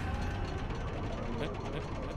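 Anime trailer soundtrack: a steady, busy rattle of rapid small ticks over a low rumble, with music faintly under it.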